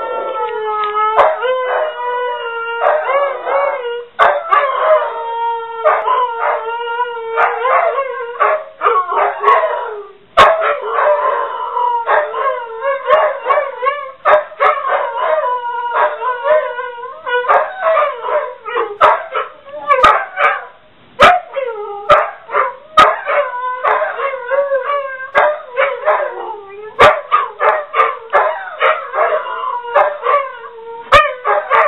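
A Saluki and a Brittany howling together, set off by a ringing telephone. Long wavering howls overlap, with the voices trading off and shorter yips breaking in.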